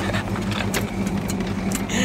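Old pickup truck's engine running steadily, heard from inside the cab as a low hum, with scattered clicks and rustle of the camera being handled. The owner says the engine is not running right and suspects low compression, off timing or valves needing adjustment.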